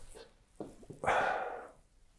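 A man's sharp intake of breath through the lapel microphone, lasting under a second, just before he speaks again, with a few faint mouth clicks before it.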